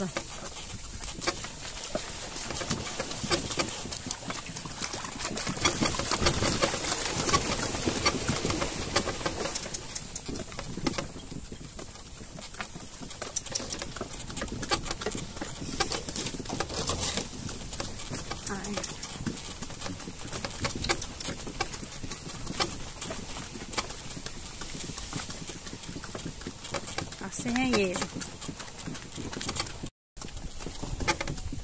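Hooves of a cart-pulling equine clip-clopping as it walks along a dirt track, with many small knocks and clicks from the moving cart and harness.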